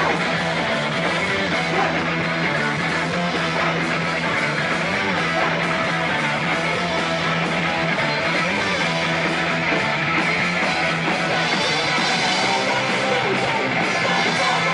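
Live rock band playing: electric guitar, bass guitar and a drum kit in a loud, steady, dense wall of sound.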